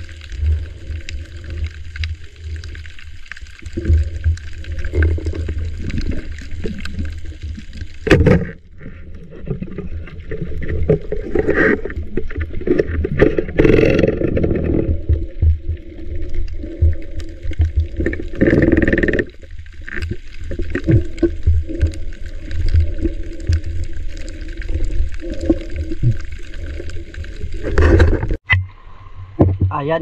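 Muffled underwater sound from a camera held below the surface while swimming: a constant low rumble with gurgling, sloshing water. There is a sharp knock about eight seconds in, and a louder burst of noise near the end as the camera comes up to the surface.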